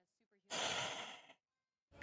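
A single breathy sigh lasting about a second, starting about half a second in.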